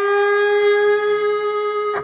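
Electric guitar holding one sustained note, picked at the 12th fret of the G string and bent slowly up a full step, so the pitch rises gradually.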